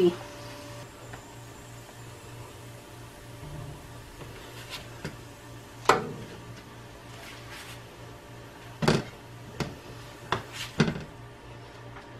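Burritos frying in a screaming-hot oiled pan: a low steady hiss and hum, with several sharp knocks of a spatula and tongs against the pan in the second half.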